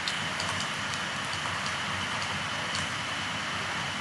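Steady hiss of background noise from the recording microphone, with a faint steady high tone. A few faint ticks are heard as a stylus writes on a pen tablet.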